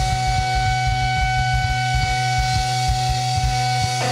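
Live rock band: an electric guitar holds one long, steady sustained note over a steady bass note and drum hits.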